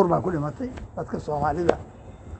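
A man talking in conversational speech, with a couple of sharp clicks between his words.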